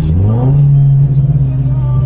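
Toyota 86's flat-four engine heard from inside the cabin, its note rising quickly in pitch within the first half second and then holding steady.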